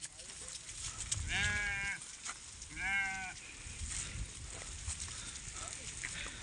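Two sheep bleats, one about a second and a half in and one about three seconds in, each roughly half a second long with a wavering pitch. Under them runs a low, steady background rumble.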